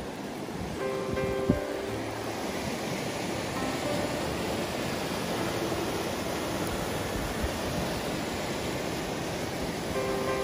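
Steady rushing of open river rapids running between ice and snow, under quiet background music with a few sustained notes.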